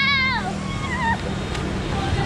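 A young boy's high-pitched squeal while running, two wavering cries that fall in pitch at the end, the first louder. Music plays underneath.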